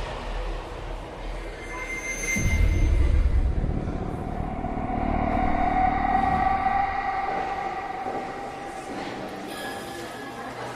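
A low rumble swelling up about two seconds in, then a long steady whine that fades away near the end.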